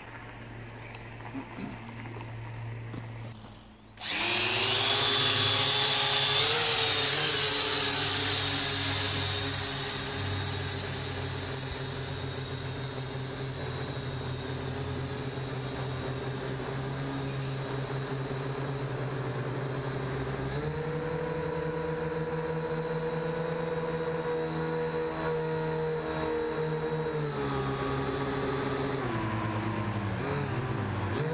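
Syma X8W quadcopter's motors and propellers spinning up suddenly about four seconds in, then a steady buzzing whine as it flies. The pitch steps up about two-thirds of the way through as the throttle rises, and drops back near the end.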